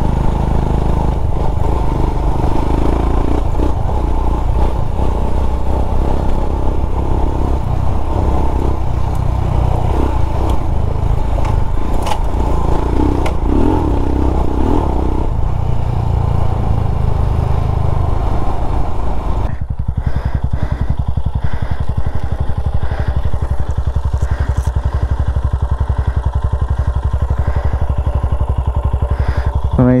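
Royal Enfield Himalayan's 411 cc single-cylinder engine running steadily while the bike rides a dirt and gravel trail. About twenty seconds in the sound settles into a quieter, more even engine note as the bike slows.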